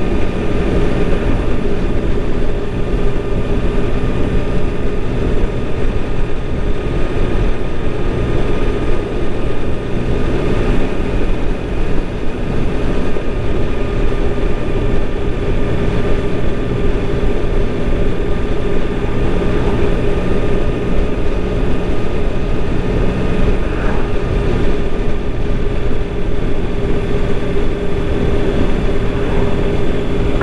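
Steady engine drone with road and wind noise from a vehicle cruising at an even speed, the pitch holding level throughout.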